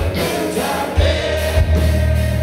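Live rock band playing a ballad: a male lead singer singing into a microphone over bass guitar and drums, loud and full, with a drum hit about a second in.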